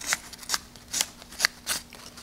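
Fine sandpaper rubbing over the rounded tip of a wooden dowel by hand, in five quick strokes about two a second.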